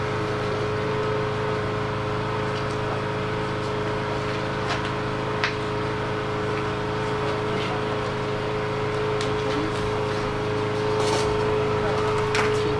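A steady machine hum with one constant mid-pitched tone, running evenly, with a few faint clicks.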